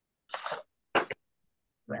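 A person coughing twice: a short rough cough, then a sharper, louder one about half a second later.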